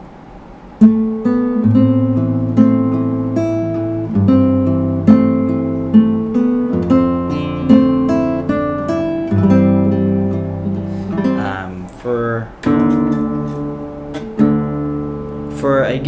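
Nylon-string classical guitar played solo: a fingerpicked piece with low bass notes under a higher melody, starting about a second in and pausing briefly near the end before going on.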